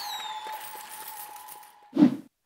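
Tail of a short electronic intro jingle: a single held note ringing and fading away, with a brief falling whistle at the very start.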